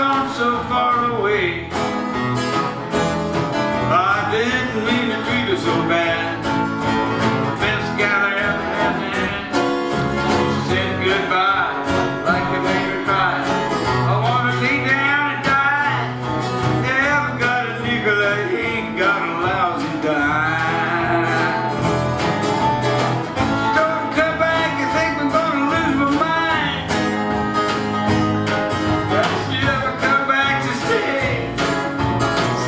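Two flat-top acoustic guitars strummed and picked together in a steady folk-blues rhythm, played in the key of E.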